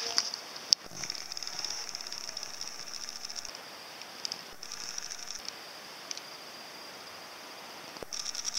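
A camcorder's zoom motor whirring in bursts, about two and a half seconds and then briefly again, picked up by the camera's own microphone as the lens zooms in, with a sharp click near the start.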